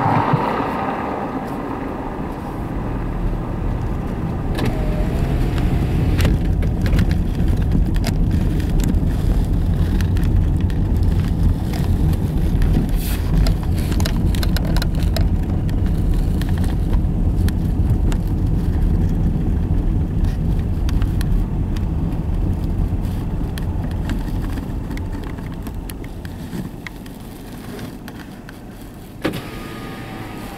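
Road noise inside a slow-moving car: the tyres rumble over an old brick street, with many small rattles and clicks from the bumpy surface. It grows louder a few seconds in and eases off toward the end, where one sharper knock is heard.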